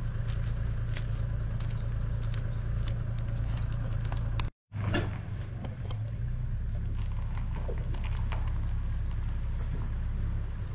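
Four-wheel-drive engine running low and steady while reversing a camper trailer, with scattered small crunches and clicks over it. The sound drops out for a moment about four and a half seconds in.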